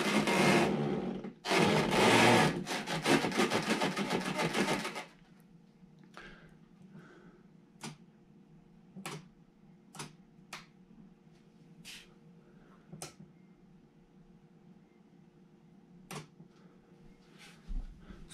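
Small RC servos in a Spektrum AR630-equipped model plane buzzing in two bursts over the first five seconds, driving the control surfaces as the receiver's gyro stabilisation corrects for the plane being moved by hand. After that, a faint steady hum with scattered sharp clicks.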